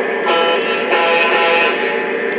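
A steady chord of held electronic tones, sounded twice in quick succession, over the running noise of a Lionel O-gauge model train.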